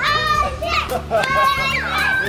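Children cheering and squealing with high-pitched, drawn-out shouts, mixed with laughter.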